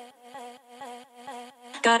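A quiet buzzing electronic tone, pulsing about four times a second, then a louder sung or vocal-sample note near the end.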